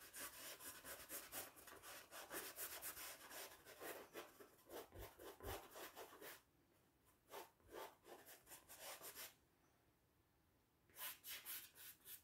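Faint scratchy rubbing of an angled brush working thinned oil paint onto a stretched canvas in quick short strokes. There is a dense run of strokes for about six seconds, a few more, a pause of about two seconds, then more strokes near the end.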